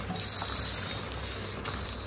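Cooked popati, a mix of bean pods, leaves, chicken pieces and boiled eggs, tumbling out of an upturned clay pot onto a woven plastic sack. It makes a rustling hiss with a few light knocks.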